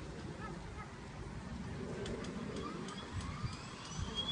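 Air ambulance helicopter's turbine engines whining over a low rumble, the whine rising in pitch through the second half as the engines spool up.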